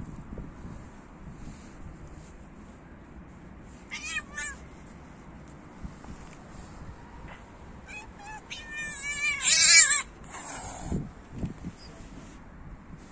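Tortoiseshell cat meowing: one short meow about four seconds in, then a longer, louder meow with a wavering pitch from about eight and a half to ten seconds.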